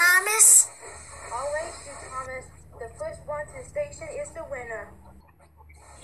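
Voices talking: loud at the very start, then quieter speech over a low steady hum that stops shortly before the end.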